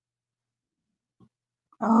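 Near silence, then near the end a woman's drawn-out, low "Oh" as she begins to answer a question.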